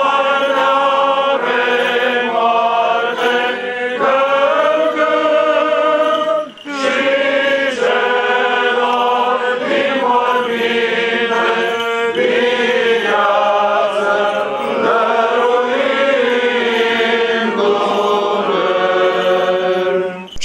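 Voices singing Orthodox liturgical chant in long, held phrases, with a brief pause between phrases about six and a half seconds in.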